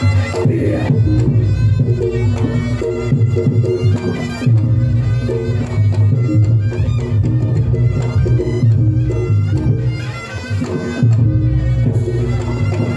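Live Reog Ponorogo gamelan accompaniment: a reedy slompret shawm playing a wavering melody over kendang drums and deep gong and kempul strokes, with a short lull about ten seconds in.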